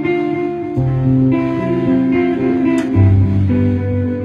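Guitar music: plucked and strummed chords ringing on, with the bass note changing about a second in and again about three seconds in.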